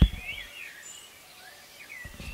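Birds chirping, in short rising and falling calls, after a single dull thump right at the start.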